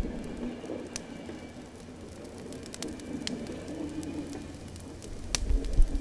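Bonfire crackling: a low, steady rustle of burning wood with a few sharp, separate pops.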